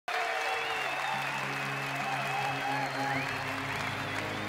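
Concert crowd applauding and cheering, with wavering whistles, over sustained low chords from the stage that change about three seconds in.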